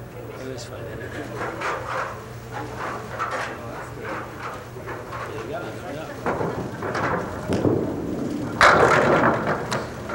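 A candlepin ball hits the pins near the end: a sudden loud clatter of falling pins, leaving four standing. Before it there is a low murmur of bowling-alley crowd voices and a steady low hum.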